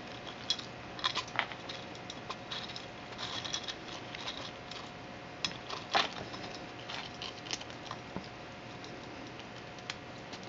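Baby squirrel rummaging through food pieces in a plastic bowl: scattered clicks, crackles and short rustles, the sharpest about six seconds in.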